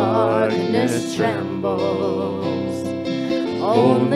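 Live worship song: singing with an acoustic guitar played alongside.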